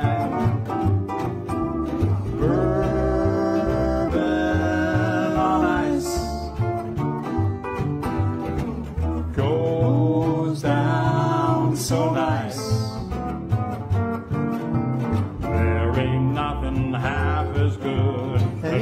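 Country band playing an instrumental break: lap steel guitar, upright double bass and archtop acoustic guitar, with the melody in notes that slide up and down in pitch over a steady bass line.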